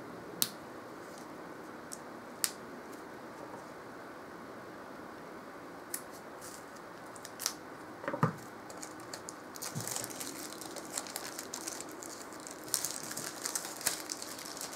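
Hands handling a boxed tarot deck and its packaging: a few light taps and clicks, then from about ten seconds in a busy stretch of quiet rustling and crinkling.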